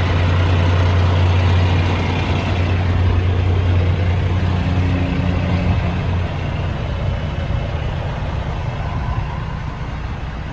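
Cummins ISX inline-six diesel of a 2016 International LoneStar idling warm: a steady low hum that grows quieter about six seconds in, once heard from inside the cab.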